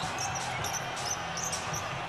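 A basketball being dribbled on a hardwood court, over a steady low background of arena noise.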